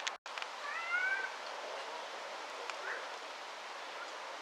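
A short animal call about a second in, rising then falling in pitch, over steady outdoor background noise. The audio cuts out for an instant just before it.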